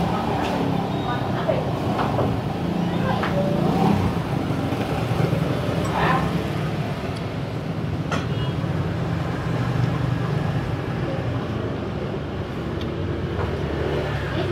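Indistinct background voices over a steady low hum, with a few sharp clinks of a metal spoon against crockery, one about six seconds in and another about two seconds later.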